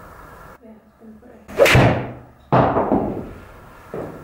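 A PXG 0311XF iron striking a golf ball off a hitting mat indoors: a sharp strike about one and a half seconds in, then a second sudden knock about a second later that fades away.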